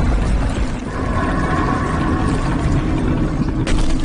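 Film sound effect of a heavy lid being pushed, a deep, steady grinding rumble, with a sharp hit near the end.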